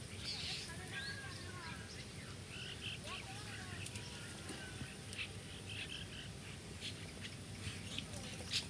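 Birds chirping outdoors: many short chirps and quick sliding whistles, coming and going throughout, over a steady low background hum.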